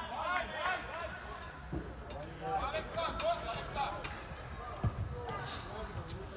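Distant voices calling across a football pitch during play, with two dull thumps of the football being kicked, one about two seconds in and a louder one near five seconds.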